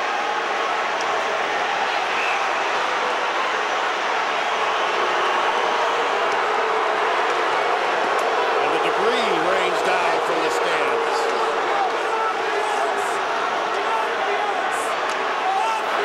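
Large hockey-arena crowd making a steady loud din of many voices, with a few individual shouts standing out around the middle.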